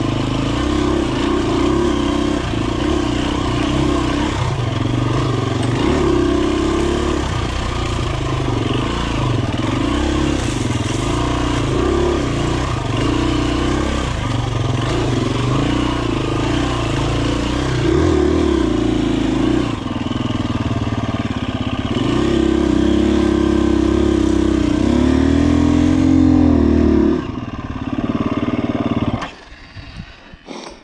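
2017 KTM 250 EXC-F dirt bike's single-cylinder four-stroke engine under way on a trail, its note rising and falling with the throttle over and over, then dropping away to much quieter near the end.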